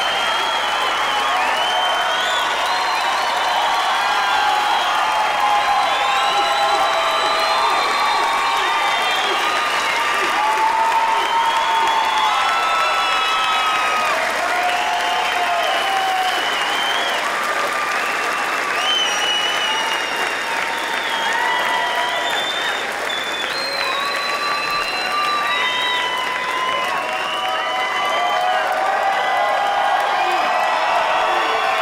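Large theatre audience applauding and cheering steadily in an ovation, with many shouts and whoops over the clapping.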